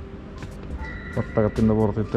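A man speaking from about a second in, over faint background music.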